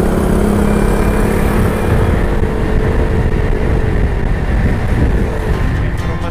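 A Yamaha Mio i 125 scooter's single-cylinder engine running at riding speed, under a constant rush of wind and road noise on the handlebar-mounted camera. The engine note holds steady, then sags slightly and fades about four seconds in as the throttle eases.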